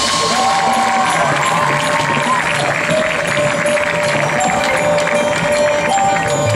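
Marching band playing: a melody of held notes that bend slightly in pitch, over light percussion.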